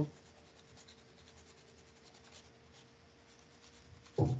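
Near silence: faint room tone with a steady low hum and faint light scratching or ticking.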